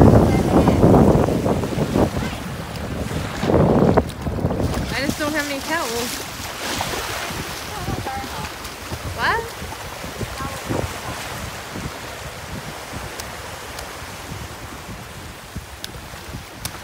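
Surf washing in shallow water with wind buffeting the microphone, loudest in the first few seconds and then settling to a softer steady wash. Brief high voice sounds rise over it about five seconds in and again just after nine seconds.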